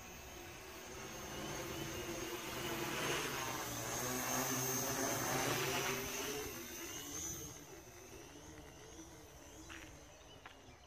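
Quadcopter with four 2212 1000KV brushless motors and 10x4.7 propellers flying past: the propeller buzz grows louder, is loudest in the middle with its pitch bending up and down, then fades away. A few sharp clicks come near the end.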